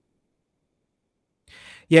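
Dead silence for about a second and a half, then a short, faint in-breath just before a man starts to speak.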